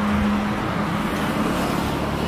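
Road traffic: a motor vehicle passing, its steady engine hum over an even rush of tyre and road noise.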